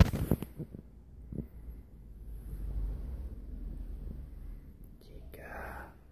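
Bedsheets rustling and the phone camera being handled under the covers, with sharp scrapes and knocks in the first second and a low rumble after. A brief soft whisper near the end.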